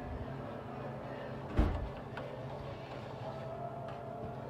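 Metal spoon stirring vegetables and liquid in a frying pan, with one loud thump about one and a half seconds in and a lighter click shortly after, over a steady low hum.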